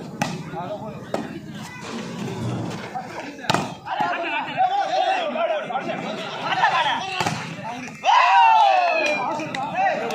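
A volleyball is struck by hand a few times during a rally, each hit a sharp smack. From about four seconds in, spectators shout and cheer, with the loudest yell about eight seconds in as the point ends.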